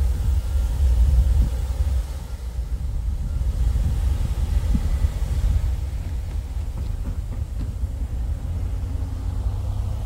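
Low, steady rumble of a Norfolk Southern freight train's diesel locomotives approaching at a crawl as the train slows to a stop, a little louder in the first two seconds.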